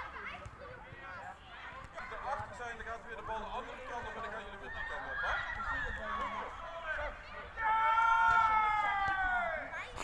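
Children's voices calling out in scattered bursts, then near the end one loud, long shout of about two seconds whose pitch falls steadily.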